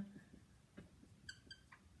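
Faint dry-erase marker strokes on a whiteboard, with two short high squeaks of the marker tip about a second and a quarter in.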